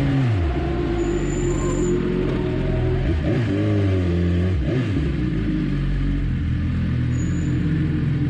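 BMW S1000RR's inline-four engine dropping to idle as the bike slows, its revs briefly rising and falling a few times around the middle before settling back to a steady idle.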